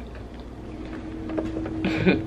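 A person eating oatmeal, with faint small clicks of spoon and mouth, then a long, steady hummed "mmm" beginning a little under a second in.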